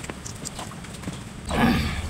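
Close-up eating sounds of a man eating rice and chicken curry by hand: quiet chewing and small lip clicks, then a loud, short noisy mouth sound about one and a half seconds in as a handful goes into his mouth.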